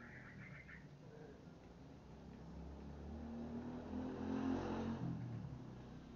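A vehicle engine passing by off-camera: it grows louder, is loudest about four to five seconds in, then fades.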